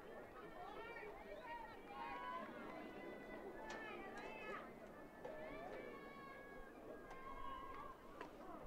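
Faint voices of players and spectators calling out across the field, with no clear words.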